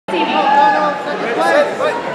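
Several people talking and calling out at once, their voices overlapping in the echo of a large gym hall.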